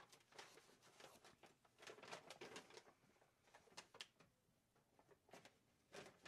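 Near silence with faint, scattered rustles and small clicks from paper name slips being handled as a winner's name is drawn from a container.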